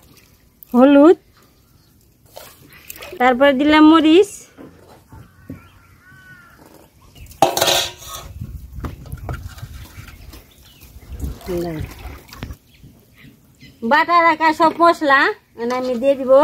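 Women's voices in short bursts, with a single brief clatter of steel bowls and pots about halfway through.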